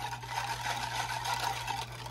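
Wire whisk stirring a thin liquid sauce of vinegar, wine and brown sugar in a glass baking dish, the wires swishing through the liquid and brushing the glass, over a steady low hum.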